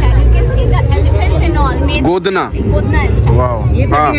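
Indistinct voices of people talking, over a loud, steady low rumble that drops out briefly a little past the middle.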